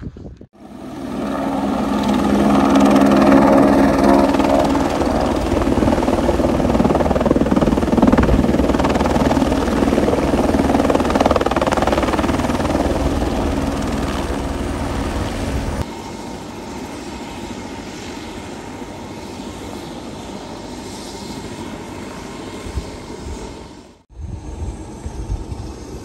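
Helicopter flying, its rotor and engine swelling over the first few seconds and then running steadily. About sixteen seconds in the sound drops abruptly to a quieter, steady drone, which cuts off shortly before the end.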